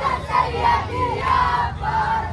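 A crowd of boys and young men chanting a Shia mourning lament (nauha) together, loud, many voices at once.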